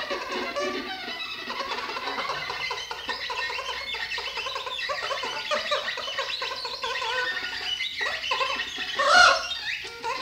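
Free-improvised duet of alto saxophone and viola: a busy, unbroken stream of short, shifting notes, with one loud rising note near the end.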